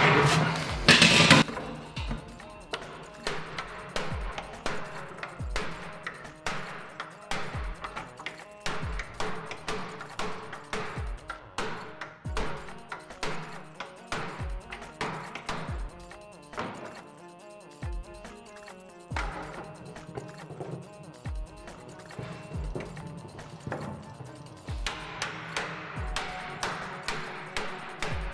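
Background music over a cooper hammering a metal hoop down onto a wooden barrel with a hoop driver: repeated sharp hammer blows, about one or two a second, after a loud clatter at the start as the hoop is dropped over the staves.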